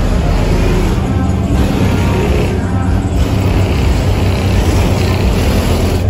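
Car engines running at a steady idle, with music playing over them.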